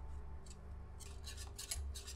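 Whisk scraping and stirring in a stainless steel saucepan of custard cooking until it thickens. The strokes are sparse at first, then come quickly, about five a second, in the second half.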